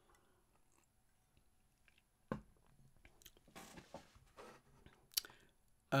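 Faint, scattered mouth sounds of a person eating or drinking close to the microphone, with a single soft knock about two seconds in and a sharp click near the end.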